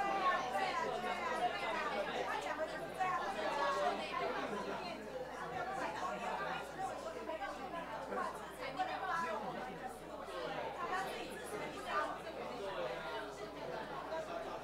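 Many people talking at once: a steady hubbub of overlapping, unintelligible conversations in a large meeting room.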